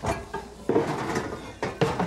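Metal pans clattering as a stainless steel frying pan is taken out and handled: a string of sharp knocks, the loudest about two-thirds of a second in and twice near the end.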